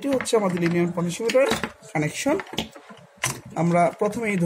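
A man talking in Bengali, with a few sharp clicks from wires and test leads being handled.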